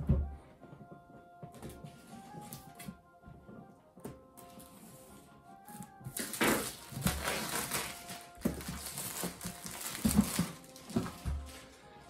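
Soft background music throughout. About six seconds in, plastic shrink wrap on a board game box starts rustling and crinkling loudly as it is pulled off after being slit with a knife, and this goes on for about five seconds.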